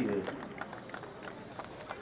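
A man's announcement trails off. Then come faint, irregular clicks of metal rifle parts being handled and fitted together, over a low outdoor hiss.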